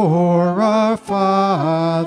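Church congregation and song leaders singing a slow hymn, with violin and piano accompaniment; each note is held for about half a second and the melody steps down and back up.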